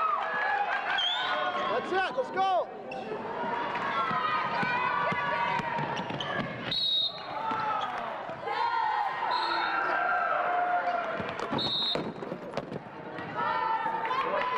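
Live basketball game sound in a gym: a ball bouncing on the hardwood, short high sneaker squeaks a few times, and players and spectators calling out.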